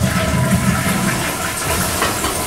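Toilet flushing: a steady rush of water.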